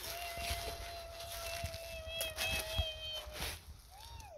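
A faint, thin, high-pitched whine like a tiny squeaky voice, held on one note for about three seconds with a short rise and fall in pitch near its end, then a brief rising-falling squeak right at the end. It is presented as the voice of a goblin inside a little toy house.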